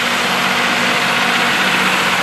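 An engine idling steadily at an even speed: a constant low hum under a broad hiss.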